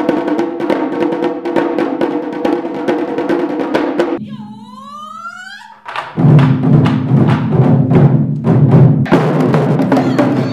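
Taiko drum ensemble playing dense rhythmic strokes over sustained pitched tones. About four seconds in the drumming drops away to a brief quieter passage with a sliding, rising pitched sound, then the full ensemble comes back in louder about six seconds in.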